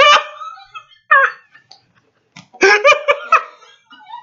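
A man laughing hard and loudly in separate bursts: one right at the start, another about a second in, then a quick run of pulsing laughs near the end.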